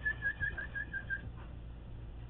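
A dog whining: a thin high tone broken into quick pulses, falling slightly in pitch and stopping a little past halfway.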